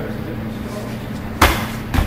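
A single sharp impact about one and a half seconds in: a low stomping thrust kick striking the bottom of an Everlast heavy bag held upright on the floor. A fainter knock follows just before the end.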